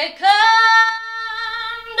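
A woman singing unaccompanied, holding one long steady note for more than a second before moving on to the next phrase.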